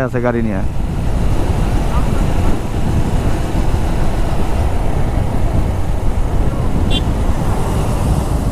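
A motorcycle cruising at highway speed, heard from the rider's seat: a steady rush of wind and road noise over the running engine.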